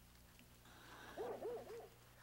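A faint animal call: four short notes in quick succession, each rising and falling in pitch, starting about a second in.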